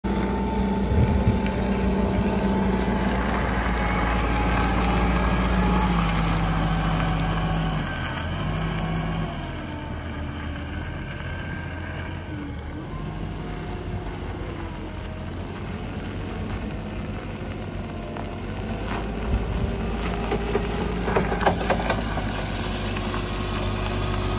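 Toyota forklift engine running; its pitch steps down about six and eight seconds in, and it settles quieter after about nine seconds. A few short clicks and knocks come near the end.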